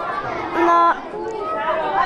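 A young girl speaking, with other children chattering in the background.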